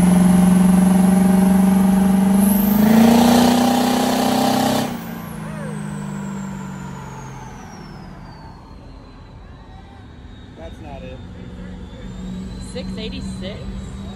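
Turbocharged 6.0 engine of a truck on a chassis dyno making a full-throttle pull: a loud, steady engine note with a high turbo whistle that climbs for about five seconds. Then the throttle is cut, and the turbo whistle winds down over several seconds as the engine coasts down.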